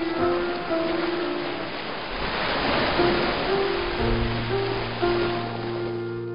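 Slow instrumental music, a melody of held notes, joined by a sustained low note about four seconds in, over a steady wash of breaking surf.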